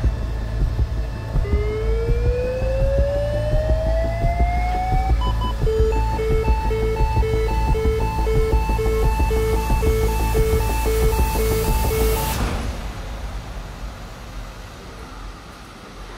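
Lifepak 15 monitor/defibrillator charging for a 150-joule shock: a rising charge tone for about four seconds, then a repeating two-note beep signalling that it is charged and ready. The beeping stops abruptly about twelve seconds in with a brief burst of noise as the shock is delivered.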